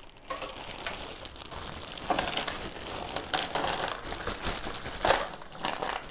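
Plastic bag of cardboard jigsaw pieces crinkling irregularly as it is handled, with louder crackles. Near the end the pieces spill out of the bag into the box.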